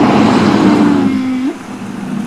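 Humpback whale blowing at the surface: a loud rushing exhalation of about a second and a half, with a low tone under it that sweeps sharply upward as the blow ends.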